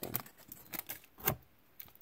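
Panini Prizm basketball trading cards and their pack wrapper being handled: a handful of short rustles and light taps, the loudest a little after a second in.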